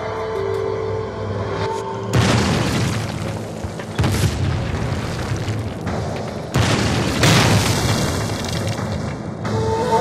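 Film sound effects of explosions: three sudden loud blasts, about two seconds in, at four seconds and at six and a half seconds, each dying away over a second or two, over background music.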